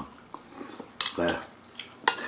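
Metal spoon and fork clinking against ceramic bowls and a plate: a few light taps and one sharp clink about a second in. A brief voice follows the clink.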